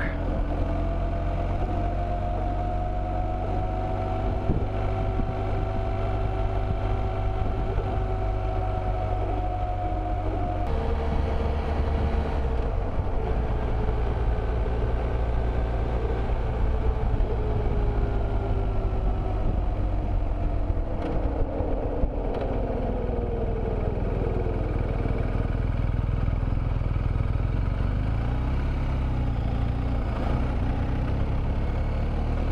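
BMW R1200 GS Adventure boxer-twin engine running at road speed, with wind rush. The engine note shifts down suddenly about ten seconds in as it changes gear, then falls away near the end as the bike slows.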